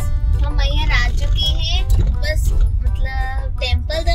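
A high voice singing in wavering phrases inside a moving car, over the steady low road rumble of the cabin.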